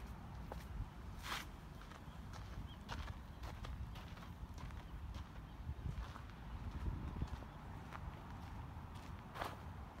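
Footsteps of a person walking on a garden path: irregular sharp steps, roughly one every half second to second, over a steady low rumble.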